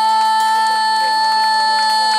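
A female singer holding one long, high, steady note through the band's amplifier.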